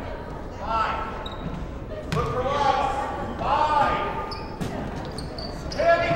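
Basketball game in an echoing gym: short shouted calls from voices on and around the court, and a few sharp knocks of a basketball on the hardwood floor.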